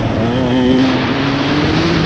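Dirt bike engine under hard acceleration, its pitch climbing steadily as it revs through a gear, with heavy wind rush on a helmet-mounted microphone.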